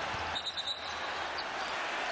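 Basketball game sound in an arena: steady crowd noise with the sounds of play on the court, and a short run of high squeaks about half a second in.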